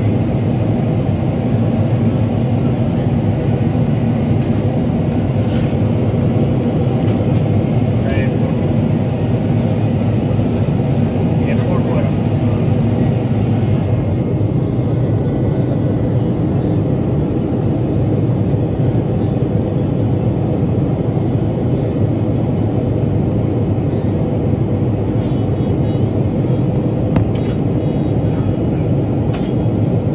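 Steady cabin noise inside a Boeing 777-300ER in flight: the low, even rumble of airflow and the GE90-115B turbofan engines, heard from a window seat.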